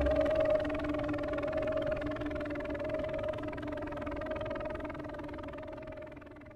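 Electronic synthesizer drone left over from the track's intro: a held mid-pitched tone over a hissy wash, slowly fading away.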